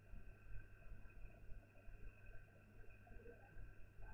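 Near silence: room tone with a faint, steady hum.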